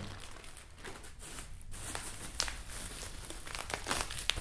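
Plastic packaging bag crinkling and rustling as it is handled and pulled open by hand, with scattered small crackles. The bag holds a coiled braided oil-cooler line.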